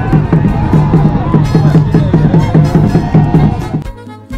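Loud music with a steady, pulsing beat and a voice singing over it, dying down near the end.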